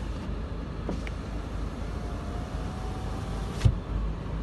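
Peugeot 308's one-touch electric window working: a click about a second in, a faint steady motor whine, then a thump near the end as the glass comes to a stop, over a low steady rumble.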